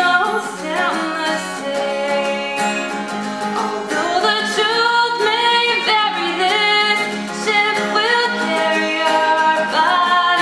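A woman sings while strumming an acoustic guitar capoed at the first fret, in a steady down-up strumming pattern, changing from A minor to F and back to A minor.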